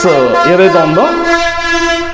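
A man speaking, then drawing out one long held vowel for about the last second.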